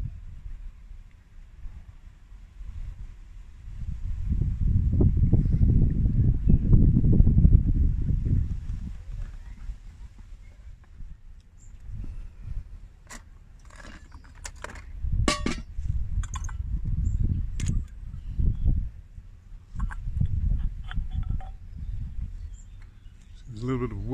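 A low rumble of wind on the microphone for several seconds, then a run of light metallic clinks and taps as the parts of an antique brass-and-nickel spirit stove mess kit (burner, pot stand, mess cup and lid) are handled and taken apart.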